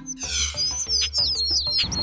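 A short whoosh, then a quick run of high, falling bird chirps, several a second: a transition sound effect over background music with a steady low beat.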